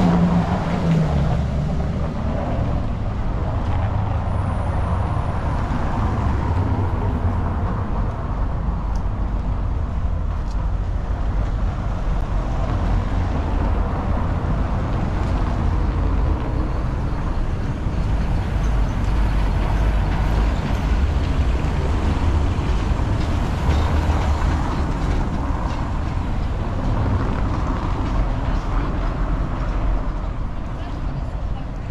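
Street traffic: a steady low rumble of motor vehicles on a city street, with one engine note falling in pitch in the first second or two.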